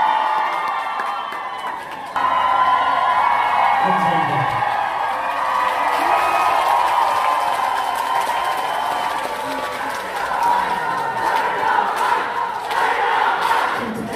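Concert audience cheering and shouting, many voices at once, growing suddenly louder about two seconds in.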